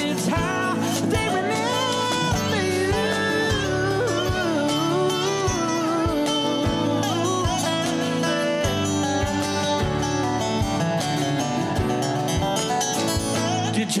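Instrumental break of an acoustic country band: a lap-played resonator guitar (dobro) plays a sliding, bending melody over keyboard chords, cajón beats and acoustic guitar.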